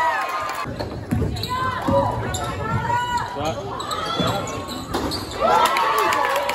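A basketball dribbling and bouncing on a hardwood gym court during play, with voices of players and spectators shouting over it.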